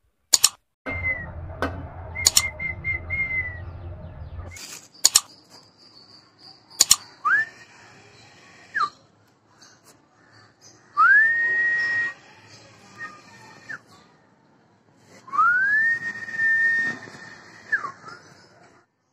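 Long whistled notes, three of them in the later part, each sliding up, holding one steady pitch for one to two seconds, and sliding down at the end. Several sharp clicks come in the first seven seconds.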